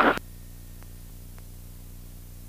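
Cockpit intercom audio feed: a rush of open-mic noise cuts off abruptly just after the start. After it comes a steady low electrical hum and faint hiss, with a few faint ticks.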